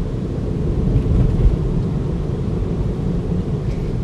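Steady low road and tyre noise inside the cabin of a Tesla Model 3, an electric car, cruising at about 30 mph.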